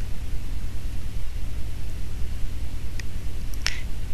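Steady low hum under a pause in speech, with two short clicks about three seconds in.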